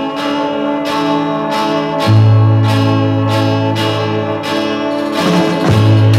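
Instrumental opening of a 1966 Swedish pop song: held chords over a steady beat, with a deep bass note coming in about two seconds in and the playing growing busier near the end.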